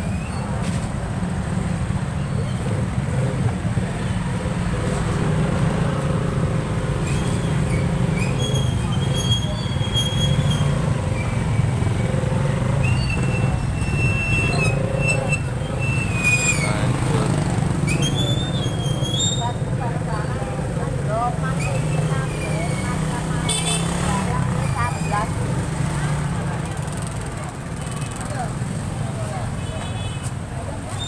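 Street noise: people talking in the background and motorcycles passing, over a steady low rumble.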